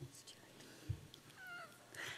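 Quiet chamber room tone with a soft low thump just before one second in, then a woman's brief faint high-pitched vocal sound, the start of a laugh, about one and a half seconds in.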